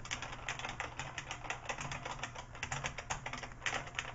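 Rapid, uneven clatter of about ten clicks a second from the homemade electronic typewriter in use: keys being typed on a PS/2 keyboard while an OKI Microline 320 Turbo dot-matrix printer prints the characters.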